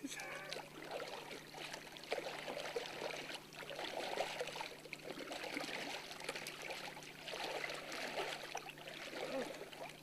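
Water splashing and churning as a flat wooden board paddle digs into shallow lake water beside a small tarp-skinned bullboat, coming in irregular swells stroke after stroke.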